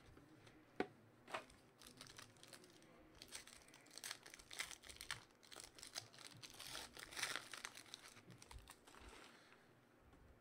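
Foil trading-card pack wrapper being torn open and crinkled by hand, faint. A couple of sharp clicks come first, then a few seconds of dense crackling.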